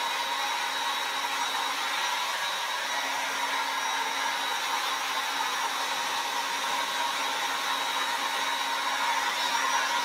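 Handheld hair dryer running steadily on a wet watercolour painting to dry it: a constant rush of air with a faint steady whine.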